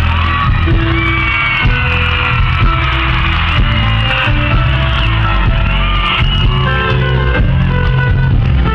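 A live band playing a song through a concert sound system, loud and steady, with a heavy bass.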